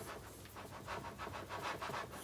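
Faint gritty rubbing, a quick run of small scratches, as a surface plate is shifted on the scraped top of a lathe bed.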